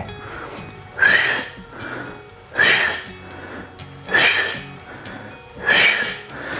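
A man's sharp, forceful exhalations through the mouth, four of them about every second and a half, with softer inhales between. These are paced breaths on repetitions of seated knee-to-chest crunches. Background music plays underneath.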